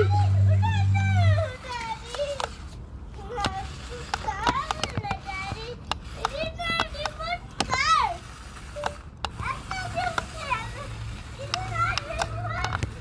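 A young child's high voice calling out and exclaiming again and again while playing. A low steady hum runs under it for the first second and a half or so, and again from about nine seconds in.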